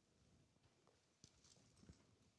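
Near silence: room tone, with two faint soft knocks about a second apart in the second half.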